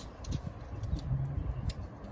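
A few faint, scattered ticks and clicks from a steel tape measure being handled against brickwork, over a low outdoor rumble.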